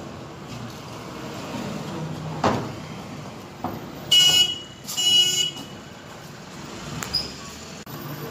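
Two short vehicle-horn blasts, each about half a second, about four seconds in and the loudest thing heard. Around them are a few single knocks and a steady background of outdoor noise.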